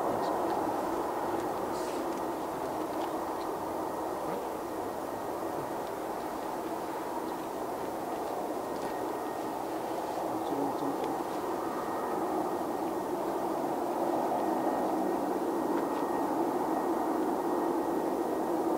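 Jet airliner engines at low taxi power, heard from a distance: a steady rumble with a faint high whine over it.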